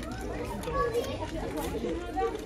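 Children's voices talking and chattering.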